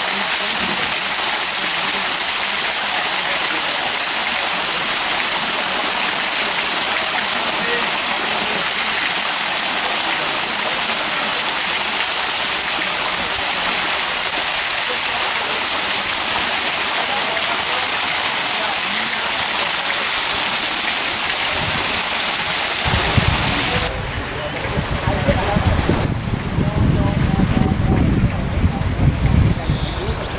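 Fountain water falling and splashing steadily in a loud, dense hiss. About 24 seconds in it cuts off abruptly, leaving a quieter outdoor sound with low rumbling bumps.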